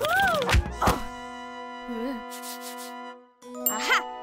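Cartoon sound effects over music: a short gliding vocal exclamation, two sharp thuds about half a second to a second in, a held musical chord, then a bright ding near the end as a lightbulb idea appears.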